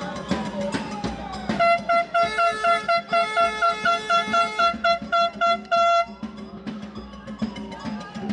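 Handheld canned air horn blown in a rapid series of short blasts, about four a second, for some four seconds from about one and a half seconds in, ending on a slightly longer blast. Behind it a slow rising and falling wail and drumming carry on.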